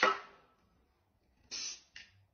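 Aerosol spray-paint can giving a short hiss about one and a half seconds in, then a brief second spurt at the end.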